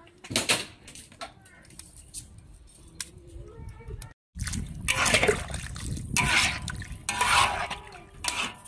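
Spatula stirring loaches in a wok of simmering sauce: liquid sloshing and splashing in several noisy bursts over a low rumble, in the second half after a short break in the sound.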